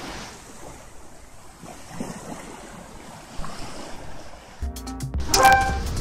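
Small waves washing up a sandy beach: a steady, soft wash of surf. About four and a half seconds in, louder music with a bass line cuts in over it.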